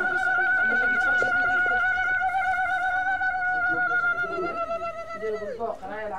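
A woman's wedding ululation (zaghrouta): one long, high, rapidly trilled cry that holds its pitch for over five seconds and drops away near the end. It is the customary cry of joy that greets a bride.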